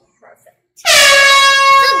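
Air horn sound effect: one loud, steady blast starting about a second in and held for just over a second.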